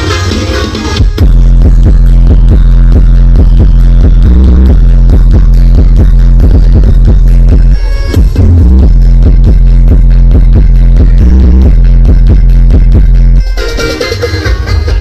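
Electronic dance music played through a towering truck-mounted 'sound horeg' speaker rig, very loud with a heavy, booming bass and a steady driving beat. The full bass comes in a little over a second in, breaks off briefly about eight seconds in, and eases near the end.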